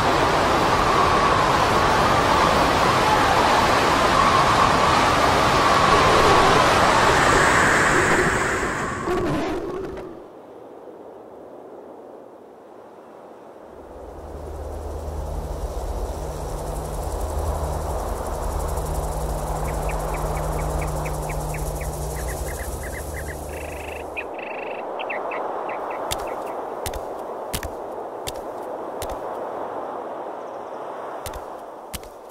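Hurricane wind and driving rain, a loud steady rush of noise with a howling tone in it, cutting off suddenly about ten seconds in. After a lull comes a low drone, then a series of sharp cracks near the end.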